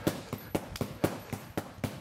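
An arnis stick striking a hanging heavy punching bag in quick, even fan strikes, about five sharp hits a second, at the drill's fastest pace.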